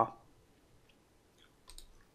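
Computer mouse clicks, a few short ones near the end, over a quiet background.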